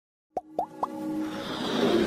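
Animated logo intro sound effects: three quick plops, each gliding up in pitch, about a quarter second apart, then a swelling musical whoosh that builds in loudness.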